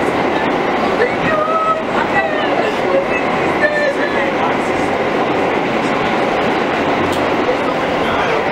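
Interior of an R160A subway car running between stations: a steady, loud rumble and rattle of the moving train.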